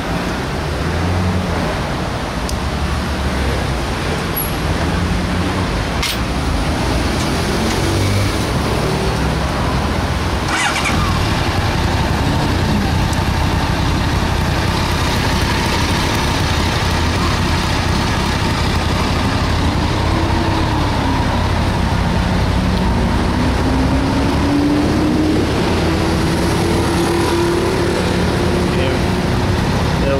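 Honda CBR1100XX Super Blackbird's inline-four engine idling steadily in neutral, with a faint tone that rises and falls in the second half and one short click about ten seconds in.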